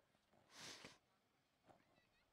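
Near silence, with one brief soft hiss about half a second in and a faint click near the end.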